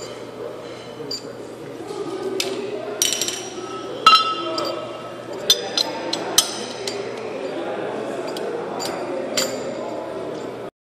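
Steel hand tools clinking as a large socket and wrench are handled and fitted together: about eight irregular, sharp metallic clinks with a short ring, the loudest about four seconds in.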